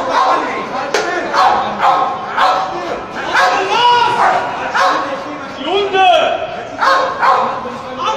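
Shouting voices from a crowd mixed with police dogs barking in short repeated bursts.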